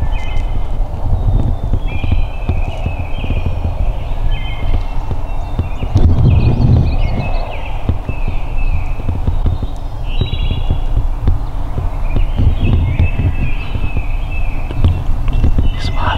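Songbirds singing short, repeated chirping phrases over a heavy, uneven low rumble, which swells loudest about six seconds in.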